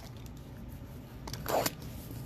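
Trading-card packaging being handled: light clicks and quiet rustling, with one brief louder rustle about one and a half seconds in.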